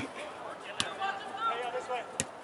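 A soccer ball kicked once: a single sharp thud a little under a second in, with faint shouting from players around it.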